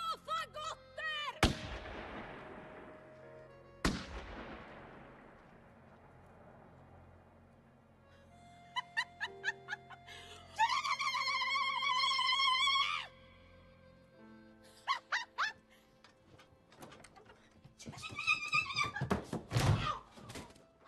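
A woman's wordless cries and one long held scream a little past halfway, with two heavy blows early on, about two and a half seconds apart, each followed by a long fading ring.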